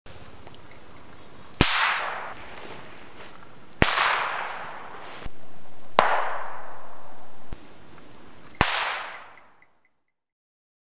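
Four sharp bangs, about two seconds apart, each followed by roughly a second of ringing decay; the last fades out just before the end.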